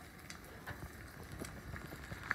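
Faint sizzle of an egg frying in butter in a carbon steel skillet, with a few light knocks as the pan is lifted and shaken over the gas burner to free the egg, which is stuck in the middle.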